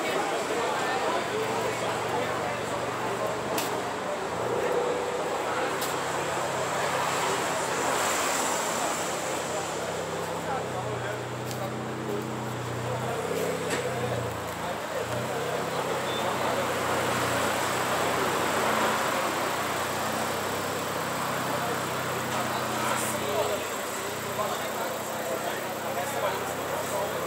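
Car engines idling with a low steady hum that shifts in pitch now and then, under the chatter of a crowd.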